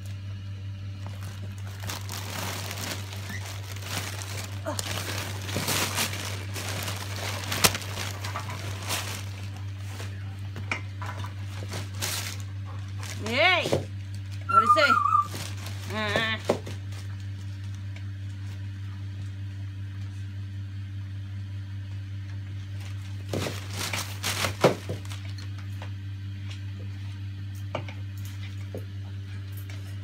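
Wrapping paper rustling and tearing as a dog rips open a Christmas present, with a few short gliding voice sounds in the middle. A steady low hum runs underneath.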